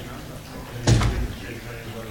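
A single heavy thud about a second in, loud and short, with a brief boom after it, over low background voices.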